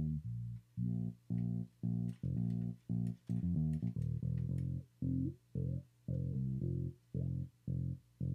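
Bass guitar track from a disco-pop song played back on its own: a steady line of short, separated notes, about three a second, with a few sliding notes about five seconds in.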